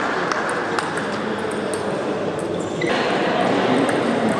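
Table tennis balls clicking off bats and tables, irregular and overlapping from several tables being played at once, in a large echoing hall over a steady murmur of voices. The background din grows louder about three seconds in.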